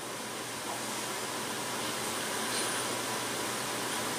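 Steady, even hiss of room noise in the pause between sentences, with no clear events.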